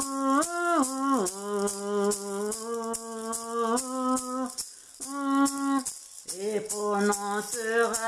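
A woman singing a slow wordless melody in long held notes, with gentle glides between pitches, over a handheld maraca-style rattle shaken in a steady beat.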